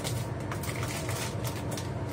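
Scattered light clicks and crackles from a small item being handled in the hands at a kitchen counter, over a steady low kitchen hum.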